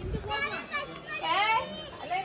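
Children's high-pitched voices talking and calling out, with one louder rising call about one and a half seconds in.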